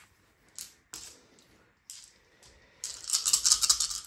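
Gaming dice scooped out of a wooden dice tray with a few scattered clicks, then a second or so of rapid rattling as a handful of dice is shaken in cupped hands before a roll.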